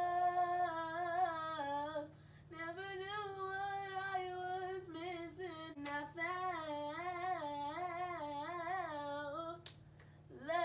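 A girl singing alone without accompaniment, a wavering melody with vocal runs. She breaks off briefly about two seconds in and stops shortly before the end.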